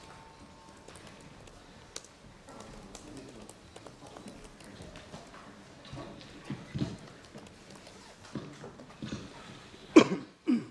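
Room sound of a hall with faint, indistinct voices talking away from the microphone and scattered small clicks and knocks. A sharp knock comes at the very end.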